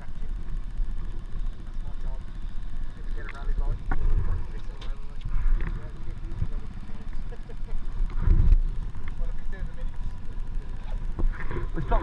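KTM 950 Super Enduro V-twin engines idling, heard as an uneven low rumble. Faint voices can be heard in the background.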